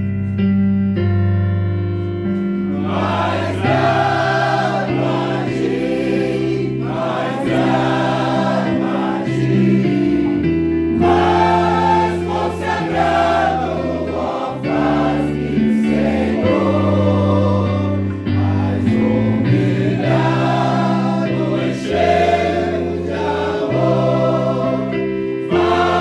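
A group of men and women singing a Portuguese hymn together, accompanied by electric bass and electronic keyboard played through amplifiers. The instruments play alone for the first couple of seconds before the voices come in.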